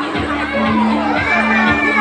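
Children shouting and cheering over music with a steady, repeating bass pattern.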